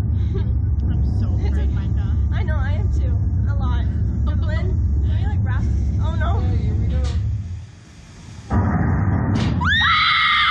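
Slingshot ride capsule launched: a steady low rumble drops away about seven and a half seconds in, a sudden loud rush of air follows a second later as the capsule shoots upward, and both riders break into high screams near the end.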